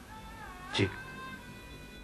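Background music of held tones that slide down and back up in pitch in the first second, then hold steady.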